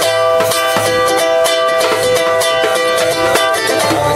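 Live acoustic band playing an instrumental intro: a ukulele strummed in a steady rhythm over sustained keyboard chords and a djembe.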